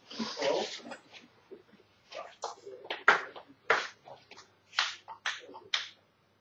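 Table tennis players between points: a short breathy burst at the start, then a string of about seven irregular sharp taps and knocks.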